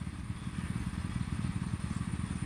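A small engine running steadily: a low, rapid pulsing.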